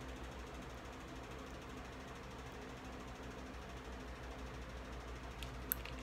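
Quiet room tone: a steady low hum with faint hiss, and two short clicks near the end.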